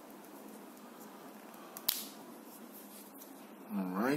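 A single sharp click about two seconds in: the Mi Band 3 fitness-tracker capsule snapping into its silicone wristband. Near the end comes a short tone rising in pitch.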